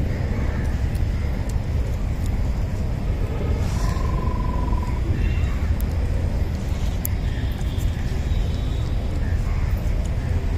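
Steady low rumble of outdoor background noise with faint voices behind it. A steady high tone sounds for about a second, some four seconds in.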